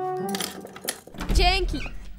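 Sharp clicks of a key working a door lock, then a low rumble as the heavy door opens, over a sustained music chord; a short spoken word follows near the end.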